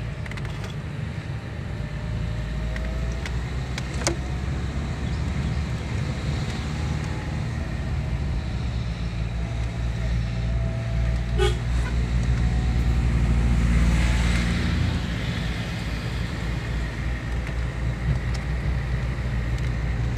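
Engine and road noise of a vehicle heard from inside its cabin: a steady low rumble that swells louder for a few seconds past the middle, with a couple of faint clicks.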